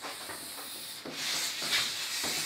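Cloth wiping chalk off a blackboard, a rubbing sound that grows louder about a second in.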